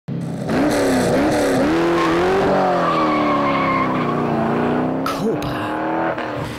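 AC Cobra's V8 engine revving hard as the roadster pulls away, its pitch climbing and dropping several times with the throttle and gear changes. A thin high squeal sounds through the middle.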